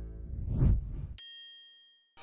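Logo sound effect: a short rising whoosh, then about a second in a bright, high bell-like ding that rings on and fades away.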